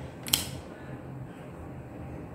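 A tarot card snapped over and laid down on a table: one short, crisp snap about a third of a second in, then only a faint steady room hum.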